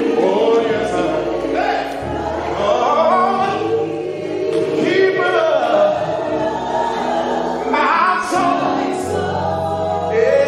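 Live gospel praise singing: several voices on microphones singing together over accompaniment whose low bass notes change every second or two.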